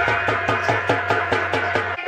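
Live nautanki stage-band dance music: a fast, even hand-drum rhythm of about six strokes a second over held sustained notes. The drumming breaks off at the very end.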